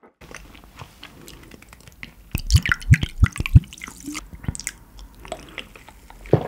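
Close-miked eating sounds: chewing with wet clicks, and a loud run of sharp clicks and several low thuds in the middle.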